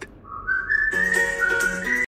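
A whistled tune over background music: a few long held notes that step upward in pitch, dip and rise again at the end. The backing music comes in about a second in.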